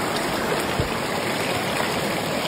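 Shallow mountain stream running fast over rocks and boulders: a steady, even wash of flowing water.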